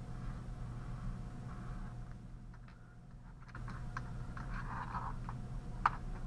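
Felt-tip marker scratching across paper as letters are drawn, with a pause in the middle, then a patch of scratching among light taps and a sharp click near the end.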